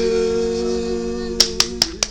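A toddler's small hand claps, three quick ones near the end, over a steady held musical note of several pitches at once.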